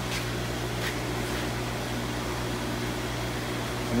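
Steady hum and hiss of running room machinery, such as air conditioning and aquarium pumps, holding at an even level. There are a couple of faint ticks in the first second.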